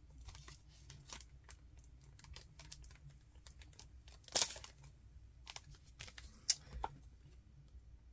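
Faint crinkling and clicking of HeroClix booster packaging being handled and torn open, with one brief louder tear about four seconds in.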